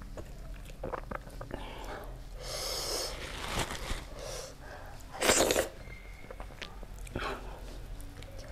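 Close-miked eating sounds: fingers working soft food on the plate and in the curry bowl, with small clicks. Short, sharp breathy noises from the eater come through, the loudest about five seconds in and a smaller one near the end.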